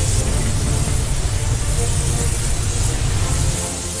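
Cartoon sound effect of a bacon cannon firing continuously: a steady, heavy rush of noise with deep bass and hiss, over background music. It eases off shortly before the end.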